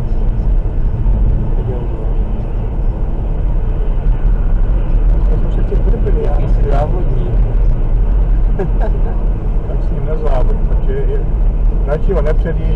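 Road and engine noise of a car at highway speed, heard inside the cabin as a steady low rumble. A few short bursts of voice come over it in the second half.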